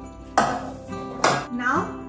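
A metal cake pan set down on a kitchen counter: two sharp metallic clanks about a second apart, over soft background music.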